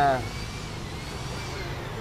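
Steady background traffic noise with a faint whine that rises and falls gently, following the end of a man's spoken word.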